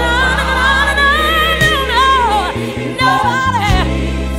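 Gospel song recording: sung voices holding long, wavering notes over a steady bass line. The bass drops away briefly about two and a half seconds in.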